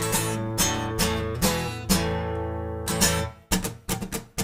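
Acoustic guitar strummed, full chords ringing out with a stroke about every half second. A little past three seconds in, it breaks briefly into quick, short, choppy strums.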